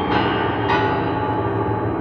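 Upright piano: a chord struck at the start and another a moment later, then left ringing and slowly fading.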